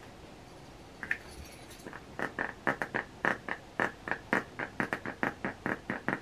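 Small plastic clicks of a twist-up deodorant stick's dial being turned, a fast run of about five clicks a second starting about two seconds in, after a single faint click about a second in.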